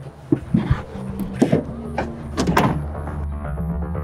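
Several knocks and clunks from a van's rear hatch and its load being handled, the loudest cluster about two and a half seconds in, then electronic background music comes in about three seconds in.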